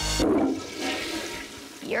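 Toilet flushing: water rushing and swirling away, loudest at the start and fading over about a second and a half. A short voice sounds over its start.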